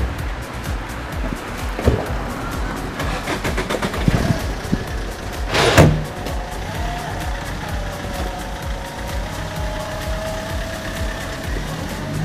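A taxi's car door slams shut about six seconds in, over steady car and street noise. Background music with a steady beat runs throughout.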